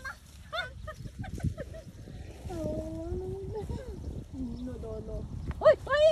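Toddlers' voices: a wavering, whiny vocalizing in the middle, then short loud cries near the end as a toddler boy goes down in the grass and starts to cry.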